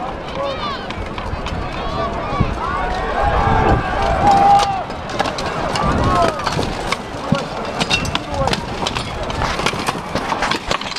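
Yelling voices and a cheering crowd over the clank and rattle of plate armour as armoured fighters run across the field, with scattered metallic knocks. The shouting is loudest about three to five seconds in.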